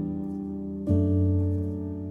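Soft solo piano music: slow sustained chords, a new one struck about a second in and left to ring and fade.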